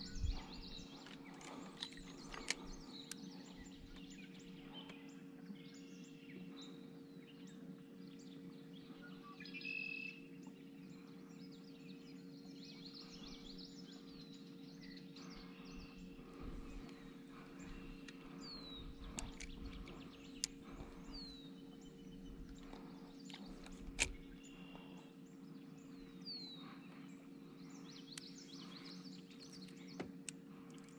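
Quiet lakeshore ambience: birds calling, with a few short falling chirps in the second half. A steady low hum runs under it, and a few sharp clicks or knocks come near the start, a couple of seconds in, and again well into the second half.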